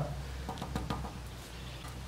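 A few faint, light taps of a hand knocking a plastic 4x2 electrical box into wet mortar to set it plumb, over a low steady background hum.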